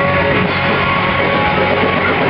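Live rock band playing loudly, guitar to the fore with drums underneath, in a stretch without singing.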